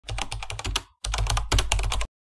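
Computer keyboard typing sound effect: quick runs of key clicks, about ten a second, broken by a short pause just before a second in, then cutting off abruptly.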